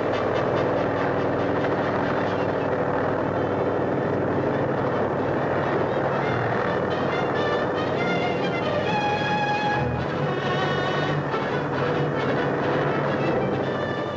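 Background music with sustained held notes over a steady noisy bed.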